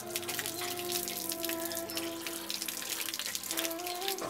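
Water running from an outdoor tap and splashing onto wet concrete, with frequent short clinks and splashes as stainless steel dishes are washed.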